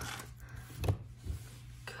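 Faint handling of a booster pack and its cards on a table, with a light tap a little under a second in, over a steady low hum.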